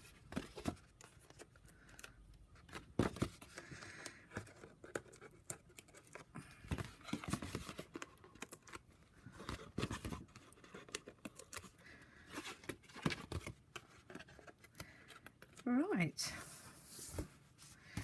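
White backing liners being peeled off strips of adhesive tape on cardstock, with the card handled between peels: faint, scattered rustles, scrapes and small ticks.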